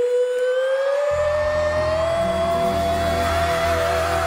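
A woman's voice holding one long, loud sung note on a vowel, gliding up to a higher pitch partway through and settling there with a slight vibrato. A band's low accompaniment comes in underneath about a second in.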